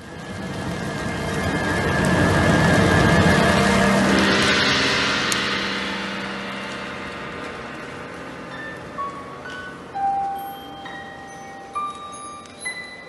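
Instrumental opening of a live cantata: a loud, rushing swell builds for about three seconds and then slowly fades over low held tones. From about eight seconds in, short high bell-like notes sound one at a time at different pitches.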